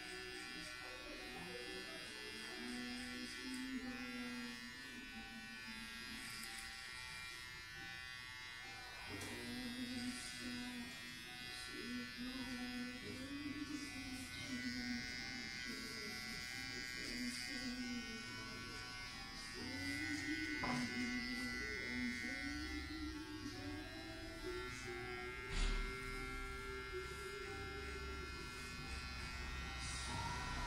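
Electric hair clippers running with a steady buzz as they cut hair close to the scalp, with one short thump about three-quarters of the way through.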